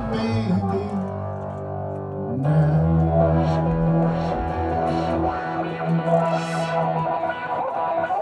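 Live instrumental music from an amplified plucked string instrument played flat across the lap. Held low bass notes give way to a new low note about two and a half seconds in, with plucked notes playing above.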